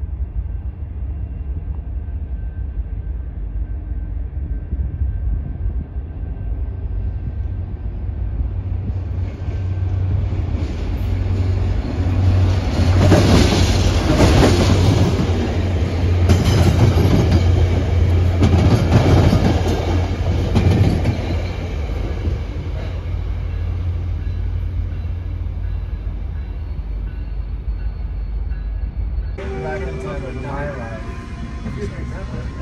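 FrontRunner commuter train approaching and passing close by: a steady low rumble grows, then the wheel and rail noise of the double-deck passenger cars surges loudest, in repeated waves, as the cars go past, before easing off.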